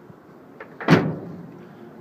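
A pickup truck's tailgate slammed shut about a second in: one sharp bang with a short ringing tail.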